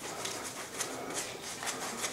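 A chip brush scrubbing water-based crackle size onto a rough sandstone-textured wall: faint, quick scratchy strokes repeated several times a second.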